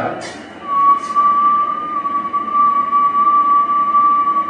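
Amateur radio transceiver on receive, giving a steady, slightly wavering whistle that comes in less than a second in, over faint receiver hiss.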